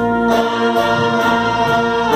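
Wind band of flutes, clarinets, saxophones and brass playing a slow ballad in long held chords, the harmony shifting a little after the start.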